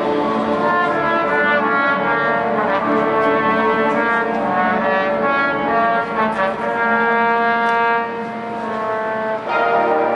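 High school marching band with its brass section playing full, sustained chords. The sound eases off a little about eight seconds in, then the band comes back in loud about half a second before the end.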